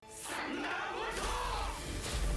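Anime battle soundtrack: a character shouting an attack's name, "Thunderbolt!", with a low rumbling rush of attack effects building from about a second in.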